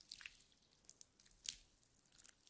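Slime being squished, giving faint scattered wet clicks and pops, the loudest about one and a half seconds in.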